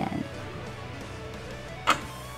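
Faint background music, with one sharp click near the end: metal chopsticks tapping the ceramic plate.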